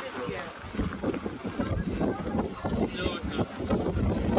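Wind buffeting the microphone in uneven gusts, with indistinct background chatter of people.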